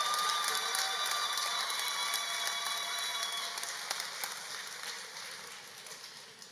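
Audience applauding, the clapping dying away toward the end.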